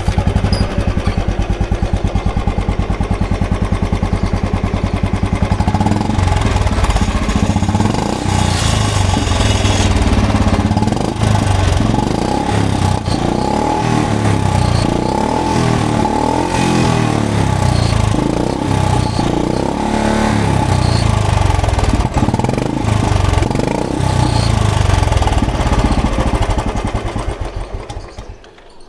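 Royal Enfield Bullet 350's single-cylinder engine running at idle just after a cold first start of the morning, with its steady low thumping beat; the sound falls away near the end.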